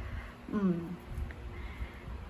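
A woman's short, thoughtful 'hmm' about half a second in, falling in pitch.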